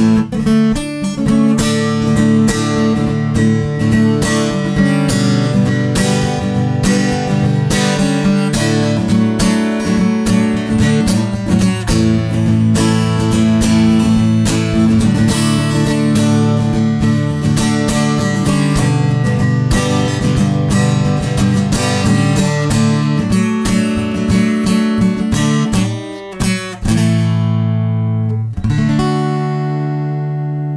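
Acoustic guitar playing the song's ending: D, G and A chords with a short melody picked over them. About two seconds before the end it closes on a last chord that is left to ring out and fade.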